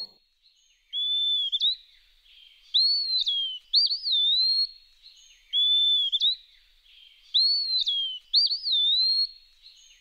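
Birdsong sound effect: a clear whistled bird call, each about a second long, gliding up or down and then holding its pitch, repeated about six times with short gaps.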